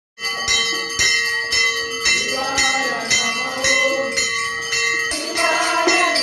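Small hand cymbals struck in a steady beat, about two strikes a second, each strike ringing on. Voices singing a devotional bhajan join in from about two seconds in and are louder near the end.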